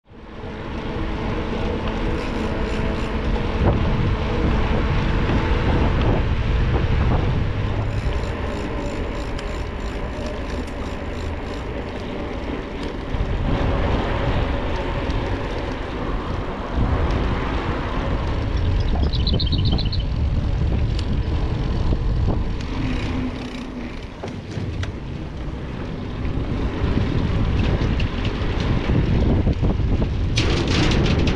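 Wind buffeting the microphone of a handlebar-mounted camera on a moving bicycle, with a continuous low rumble. Spells of rapid clicking or rattling come from the bike.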